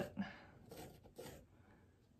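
Charcoal scratching across a textured, painted canvas: two short, faint strokes about half a second apart.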